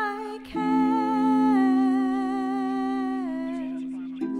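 A woman humming a wordless melody: a brief break, then one long held note from about half a second in that slides down shortly after three seconds, over a steady sustained lower tone.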